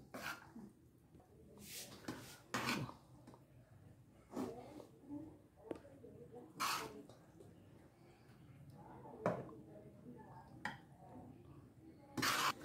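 Cooked fusilli pasta being scooped out of a pot and into a glass baking dish: a string of faint, separate scrapes and soft clinks of utensil against pot and dish, one every second or two.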